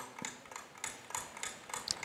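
Faint, quick clock-like ticking, about three or four ticks a second, from a game-show countdown timer.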